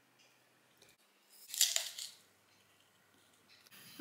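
A bite into a crisp apple slice: one short crunch about a second and a half in, with a smaller crunch just after.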